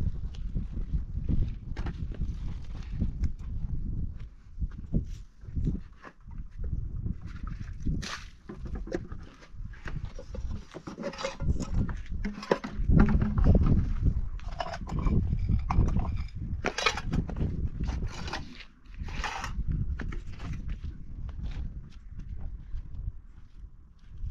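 Wind buffeting the microphone as an uneven low rumble, with scattered knocks and rustles of pots and other objects being handled.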